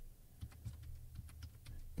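Faint keystrokes on a computer keyboard, a quick run of separate taps entering numbers into the page-margin fields, over a low steady hum.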